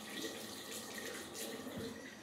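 Tap water running into a washbasin over hands being rinsed. The flow stops near the end as the tap is shut off.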